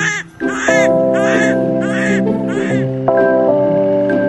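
Background music with sustained chords, with a bird cawing over it in a run of harsh, evenly spaced calls about two a second. The calls stop about three seconds in while the music carries on.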